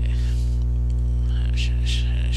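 Steady electrical mains hum picked up by the recording microphone, a low buzz with a stack of overtones. A short soft hiss comes near the end.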